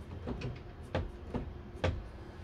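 Four light knocks or clicks, about half a second apart, over a low steady hum.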